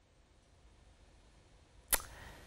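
Near silence with a faint low hum, broken near the end by a single sharp click.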